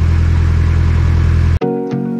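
Narrowboat's inboard diesel engine running steadily under way, a low even drone; about one and a half seconds in it cuts off abruptly to music with short plucked notes.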